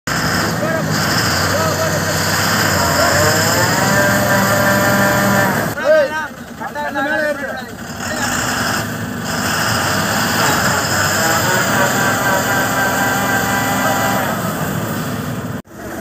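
Diesel engine of a log-laden Ashok Leyland truck revving hard under heavy load on a steep climb, its pitch rising about three seconds in and then holding high. Men shout briefly in the middle.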